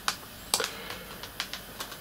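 Plastic disc cases clicking and clacking as they are handled and set down: a handful of light, irregular clicks.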